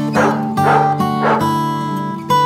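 A dog barking three times, about half a second apart, over acoustic guitar music.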